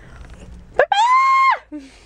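A woman's high-pitched scream, one held note lasting under a second, mimicking a dachshund's whining cry.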